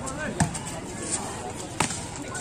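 A volleyball is struck twice during a rally, two sharp slaps about a second and a half apart, over spectators' chatter.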